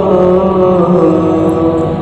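Bengali Islamic gojol: a steady, chant-like vocal drone held under the song between sung lines, with no words.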